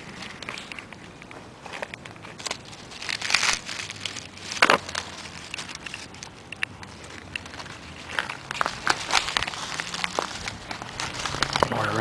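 Dry leaf litter rustling and crackling as someone moves through it by hand and on foot, irregular crunches with a few louder ones in the first half.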